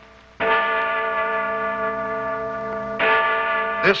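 Big Ben's great bell striking twice, about two and a half seconds apart, each stroke ringing on and slowly fading.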